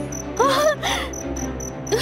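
Crickets chirping, a steady high chirp repeating about five times a second, over a low sustained music drone. About half a second in comes a short moan from a woman's voice as she grows faint.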